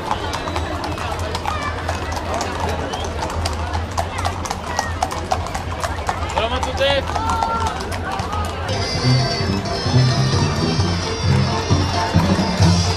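Many horses' hooves clopping on a paved street in quick, overlapping strikes as mounted riders pass close by, with crowd voices and a few shouts. About two-thirds of the way in, music with a deep bass line comes in over the hoofbeats.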